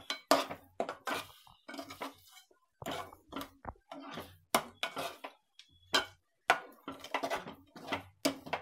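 Metal spatula scraping and knocking against a kadhai as a thick, sugary lemon chutney is stirred while it cooks, in irregular clinks and scrapes about two a second.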